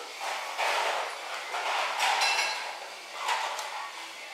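Ramen broth being slurped from a bowl held to the mouth, in about three noisy draws, with light clinks of crockery.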